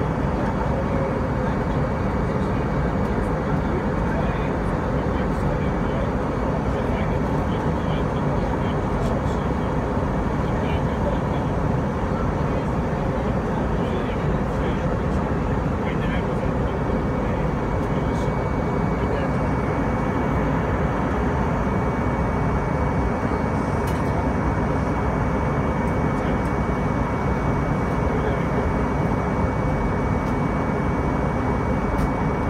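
Steady airliner cabin noise of engines and airflow as the jet descends toward landing. A thin steady whine comes in a little past halfway.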